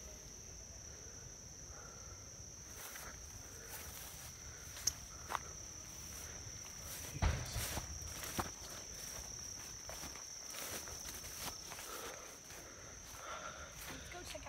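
Footsteps pushing through tall weeds and brush, with scattered rustles and a few sharper knocks about five, seven and eight seconds in. Under it, insects keep up a steady high-pitched drone.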